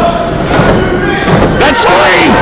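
Wrestlers' bodies thudding onto the wrestling ring's canvas as one rolls the other up into a pin, with voices shouting in the later half.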